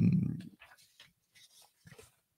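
A man's drawn-out 'euh' hesitation held on one pitch, fading out about half a second in, followed by faint scattered clicks and small handling noises near the microphone.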